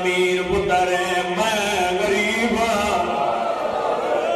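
A man's voice chanting mourning verses in a drawn-out melodic style, holding long wavering notes, amplified through a microphone and PA.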